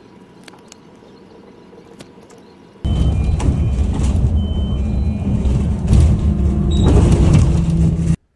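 A few faint soft clicks of book pages being turned, then an abrupt change about three seconds in to loud, low rumbling road noise of a moving vehicle.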